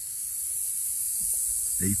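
A steady, high-pitched chorus of insects calling from the grass.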